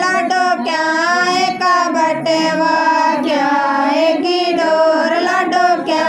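A high female voice singing a Haryanvi banni geet, a wedding folk song, in long melodic lines.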